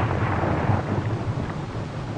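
Low, steady rumble of a distant torpedo explosion, fading away as it goes.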